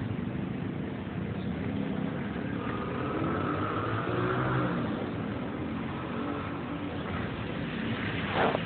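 A motor vehicle engine running steadily, with a higher whine that swells about three seconds in and fades about two seconds later.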